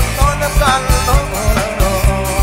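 Live band playing Thai luk thung pop: a drum kit keeps a steady, fast beat under a melody line, with the male lead singer's voice.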